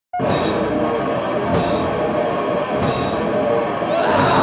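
A rock band recording starting abruptly: full band with drum kit, a cymbal crash about every second and a quarter over guitar and bass.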